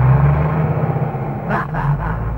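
A vehicle engine rumbling steadily on an arcade ride simulator's soundtrack, played through the machine's loudspeaker, with two short bursts of hiss near the end.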